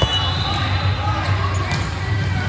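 Volleyball-hall ambience: scattered volleyball hits and bounces among background voices, over a steady low hum, with a short high squeak near the start.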